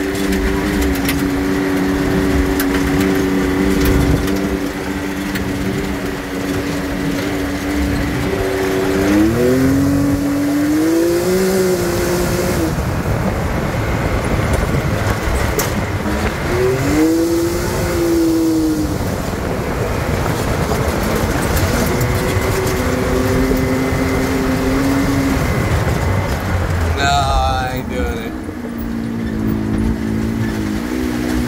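Side-by-side UTV engine running steadily over the rumble of tyres on a dirt trail. Its pitch rises and falls back twice, about a third of the way in and again a little past halfway.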